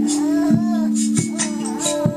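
Hugh Tracey kalimba played through a pickup into loop and delay pedals: layered, long-ringing notes with a fresh pluck about every two-thirds of a second, and a high singing voice gliding over it.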